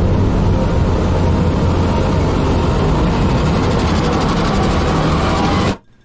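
Loud, steady low rumble like a running engine, from a music video's soundtrack, cutting off suddenly just before the end.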